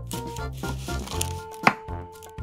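Background music, with a small kitchen knife slicing the root end off a red onion and striking a miniature wooden cutting board in one sharp tap near the end.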